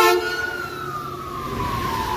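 Emergency vehicle siren wailing, its pitch topping out about half a second in and then sliding slowly down.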